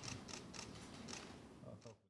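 Faint, quick, irregular clicking of camera shutters from press photographers, over low talk in the room, fading out at the end.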